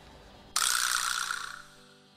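An editing sound effect: a sudden noisy burst about half a second in that fades out over about a second, over faint background music.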